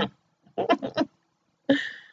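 A woman laughing softly: a few short bursts of laughter about half a second in, then a breathy laugh near the end.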